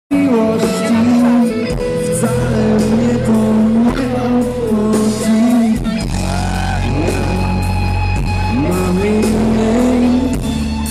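Live rock band playing, with a male voice singing a gliding, wavering melody over electric guitars, bass and drums.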